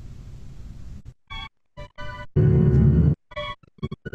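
Recorded chamber-orchestra music streamed over a video call, starting about a second in. It comes through choppy, with several short dropouts, and has a brief louder low rumble in the middle. The excerpt is the quiet ending of a new piece built on simple sustained string chords.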